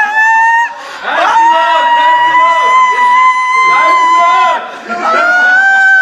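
People screaming in celebration, long high-pitched held screams: a short one at the start, a long one from about a second in lasting over three seconds, and another starting near the end, with shouting in between.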